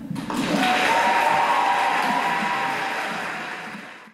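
Audience applauding, starting suddenly and fading out toward the end.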